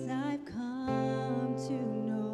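A woman singing the slow opening line of a worship song over a live band's accompaniment: a few sung notes, a brief break about half a second in, then a long held note.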